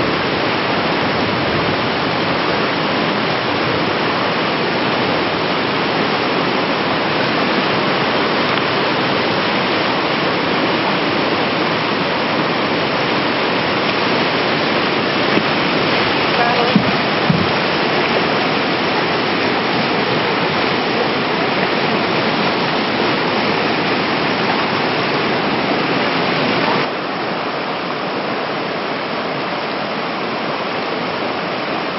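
Rushing whitewater rapids: a loud, steady, even wash of water noise that steps down a little in level near the end.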